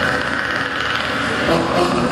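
Sound effects for a Predator-costume stage entrance, played over a hall's loudspeakers: a steady high-pitched electronic tone held over a dark rumbling background, easing off near the end.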